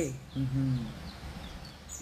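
A woman's short, low hummed "mmh" about half a second in, then steady background hiss with a few faint, short high chirps.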